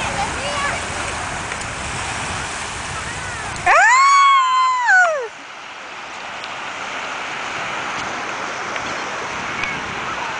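Steady wash of small waves at the shoreline, with one loud, high-pitched shout of about a second and a half a little under four seconds in that holds its pitch and then falls away.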